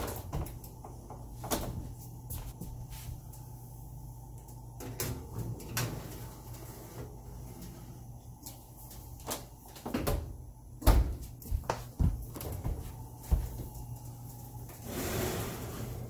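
Stainless wall oven being worked: the door opened and a metal sheet pan holding glass baking dishes slid onto the wire rack, with scattered clicks and clatter over a steady low hum. Several louder clunks and knocks come between about eleven and thirteen seconds in.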